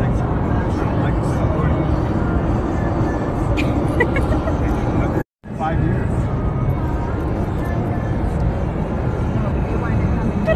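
Road and engine noise inside a moving car's cabin, a steady low rumble that cuts out for a moment about five seconds in and comes straight back.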